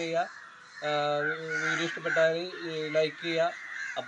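A man talking in Malayalam, with a short pause about half a second in, while birds call in the background.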